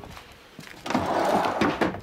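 A large old wooden drawer sliding shut on its metal drawer slides. It is a rumbling slide of about a second that starts about a second in.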